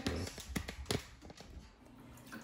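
Light, irregular clicks and taps of a puppy's claws and paws on the bathtub floor, with a low rumble of handling early on.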